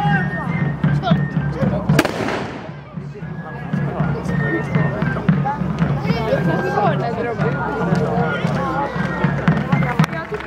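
A single black-powder gunshot about two seconds in: a sharp crack followed by a long fading echo, over steady voices and crowd chatter.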